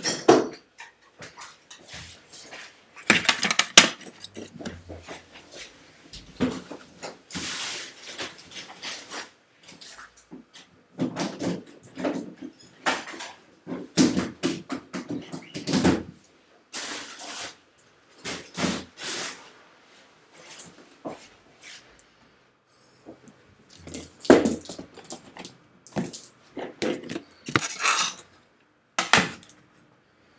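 Tools and cases being picked up, set down and rummaged through on a workbench: irregular clatters, clicks and knocks with short gaps between them.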